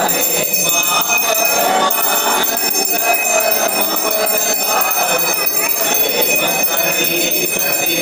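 Small hand bell ringing steadily without pause during an aarti, over a group singing a devotional song.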